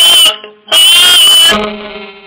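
A tzoura, a small plucked instrument with a folk-mandolin sound, strummed in loud bursts with its strings ringing out and fading between strokes. Over it, a woman holds a high sung note with a wavering vibrato for nearly a second.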